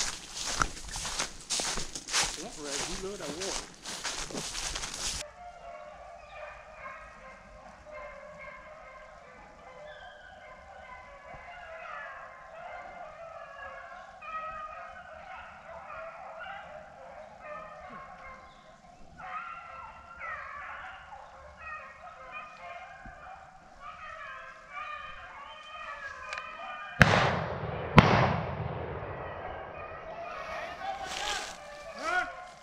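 Footsteps crunching through dry leaves for the first five seconds. After that, a pack of beagles bays steadily on a rabbit's trail, and near the end two shotgun shots come about a second apart.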